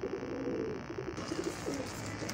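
Domestic high-flyer pigeons cooing. A low coo comes at the start, followed by fainter ones.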